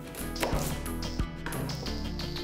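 Kitchen knife cutting down onto a cutting board, about three sharp strikes spaced roughly half a second or more apart, over steady background music.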